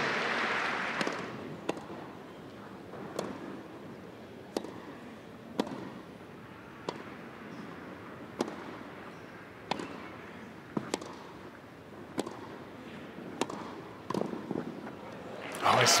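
Tennis rally: a ball hit back and forth by rackets, about a dozen sharp strikes spaced roughly a second to a second and a half apart. Applause dies away in the first second.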